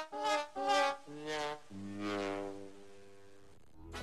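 Comic 'sad trombone' music sting: a few short brass notes stepping down in pitch, then one long low note that fades away.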